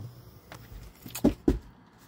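Soft footsteps on a wooden floor and rustle from handling the phone, with a couple of low thumps about one and a half seconds in.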